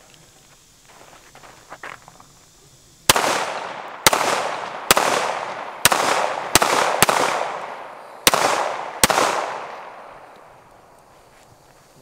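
Eight single shots from a .45 semi-automatic pistol, fired at an uneven pace over about six seconds, starting about three seconds in; each shot trails off in a long echo.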